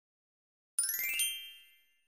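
A bright, shimmering chime sound effect, a 'ding' made of several high ringing notes. It comes in about three-quarters of a second in, with a second strike about half a second later, and rings out within a second.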